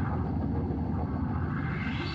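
A low rumbling whoosh with no clear pitch, its upper hiss closing down toward the low end and then opening out again, in a break between passages of Hammond organ music.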